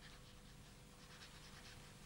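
Faint scratching of a quill pen writing on paper, over quiet room tone.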